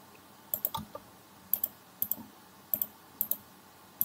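Computer mouse buttons clicking, mostly in quick pairs, about six times across a few seconds.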